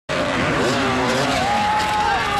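Enduro motorcycle engine revving, its pitch climbing, holding high for a moment and then falling away.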